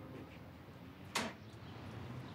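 Quiet room tone with a single sharp knock just past a second in.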